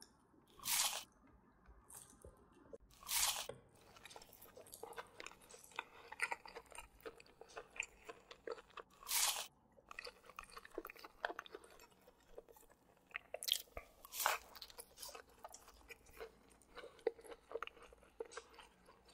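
Close-up eating of McDonald's chicken nuggets: several loud, short crunches as the breaded nuggets are bitten, with quieter crackly chewing between the bites.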